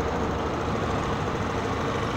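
Small Honda motorcycle engine idling steadily, with one faint steady hum and no revving.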